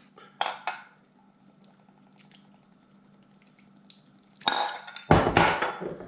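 Soy sauce poured from a glass bottle into a glass measuring cup, a faint trickle. A sharp clink comes about four and a half seconds in, followed by louder clatter near the end.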